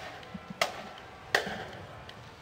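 A marching band's drumline sounding three sharp stick clicks, about 0.7 s apart, over faint crowd and street noise.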